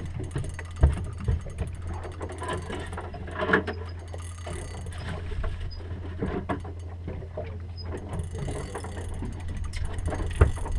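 Fishing reel being cranked and handling knocks on a small boat's deck, over a steady low rumble. The sharpest knocks come about a second in.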